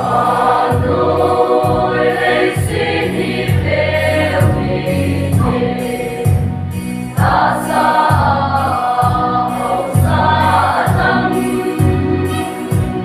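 Mixed choir singing a gospel song in a group over instrumental backing with a bass line. The voices come in at the very start, after an instrumental introduction.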